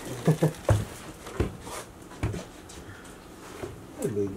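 A dog making several short sounds, most within the first two seconds or so and a fainter one near the end.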